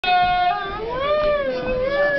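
A person's long drawn-out vocal call: one held note for about half a second, then dropping and wavering slowly up and down in pitch without a break.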